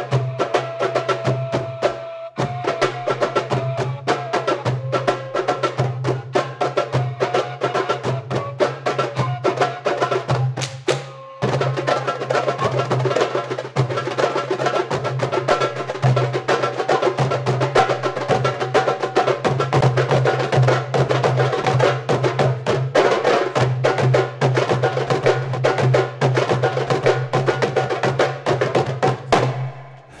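An ensemble of darbukas (metal goblet drums) played live with fast hand strokes in a dense interlocking rhythm. There are short breaks about two and eleven seconds in, and the playing stops just before the end.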